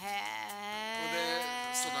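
A person's drawn-out 'heeee…', one long vowel held at a steady pitch: the Japanese interjection of being impressed.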